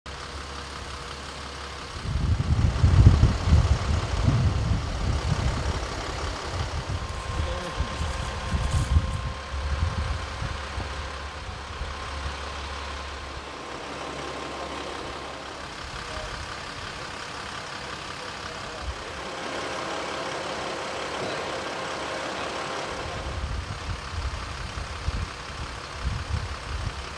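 Engines of emergency vehicles idling with a steady hum. Irregular low rumbling runs from about two to ten seconds in.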